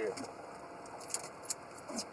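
A few sharp, light metallic clicks and clinks from fishing gear being handled, spaced out over a quiet background, with a voice trailing off at the very start.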